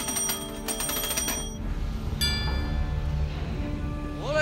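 Ship's engine order telegraph bells ringing: a rapid run of rings for about a second and a half, then a single chime a little later that rings on and fades. A low steady rumble runs underneath.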